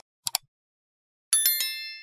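Two quick mouse-click sound effects, then a bright notification-bell ding with several ringing tones that fades out, as a Subscribe button is clicked and the bell icon is switched on.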